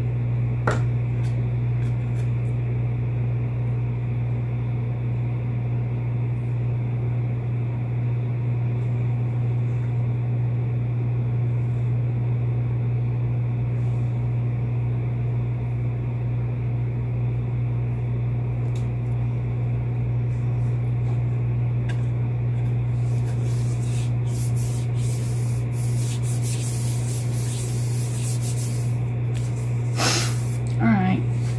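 A steady low hum runs under everything. There is a click about a second in. Near the end, hands rub and smooth a layer of cardstock flat onto a card.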